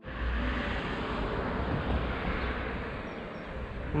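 Steady outdoor ambient noise: an even rushing hiss with a low rumble that comes and goes, fading slightly towards the end.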